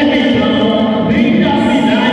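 A large group of voices singing or chanting together in a big, echoing hall, steady and unbroken.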